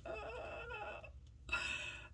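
A woman's soft, high-pitched laughter in two short bursts, the second one briefer, near the end.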